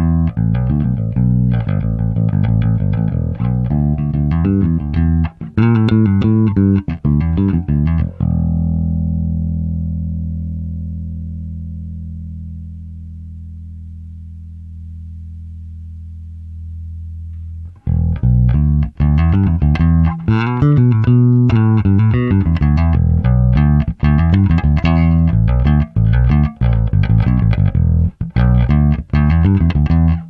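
Fender Jazz Bass ('75 USA reissue) played clean through an MXR M81 Bass Preamp: a run of quick notes, then, about eight seconds in, a low note left to ring and slowly fade for about ten seconds, before quick playing resumes.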